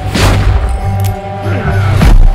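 Trailer score holding a low sustained drone, with a single revolver shot about a quarter second in that trails off in a long echo. A deep boom hits right at the end.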